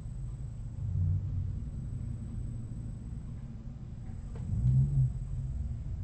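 Low background rumble, swelling briefly about a second in and again, more strongly, near the five-second mark.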